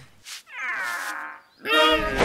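Cartoon cat character's voice: a quieter, slightly falling meow-like whine, then a short pause and a louder cry starting near the end.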